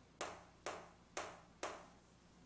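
Chalk on a chalkboard writing letters: four short, sharp chalk strokes about half a second apart.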